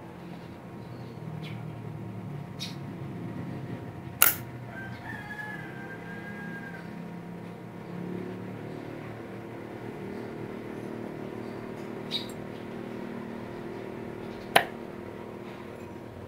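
Two sharp clicks about ten seconds apart from a digital thermostat controller's relay. It switches on as the probe temperature climbs past the 29° setpoint plus its one-degree differential, and switches off again as the temperature falls back. A few fainter ticks and a low steady hum lie underneath.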